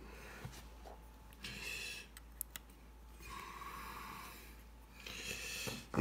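Faint breathing close to the microphone: three soft breaths about a second long each, with a few light clicks from handling.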